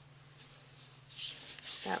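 Hands rubbing and smoothing a freshly glued panel of cardstock flat onto a card base, a soft papery rubbing that starts about a second in and grows.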